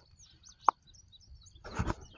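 Faint songbirds chirping in the background, with one sharp click about two-thirds of a second in and a short burst of noise near the end.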